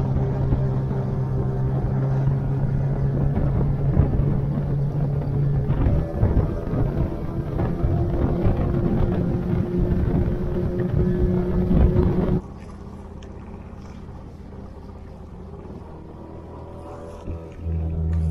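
Outboard motor driving an inflatable boat at speed, with rushing water and wind; its note shifts about six seconds in. About twelve seconds in, the sound drops abruptly to a quieter low hum.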